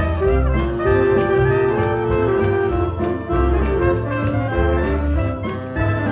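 Small jazz band playing a gospel tune together: baritone and alto saxophones, clarinet, trumpet and trombone hold long melody notes over a steady beat, with a banjo.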